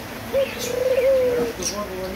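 A dove cooing: one drawn-out coo of about a second, its pitch wavering up and down, with a couple of short high chirps from smaller birds around it.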